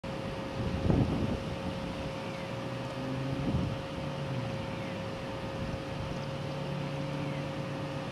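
Outdoor background noise: a steady faint hum and noise with a low engine-like drone coming and going, as of distant traffic, and a brief louder noise about a second in.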